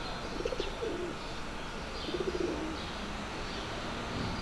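Pigeon cooing in two short bursts, about half a second in and again about two seconds in, over steady city background noise, with faint high chirps of small birds.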